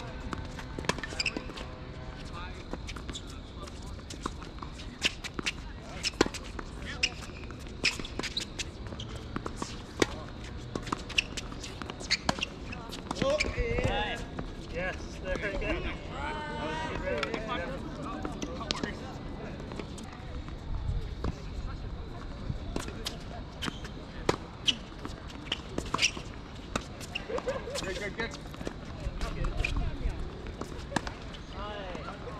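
Tennis balls being struck by rackets and bouncing on a hard court, sharp pops coming irregularly throughout, along with players' shoe scuffs. People's voices are heard about halfway through.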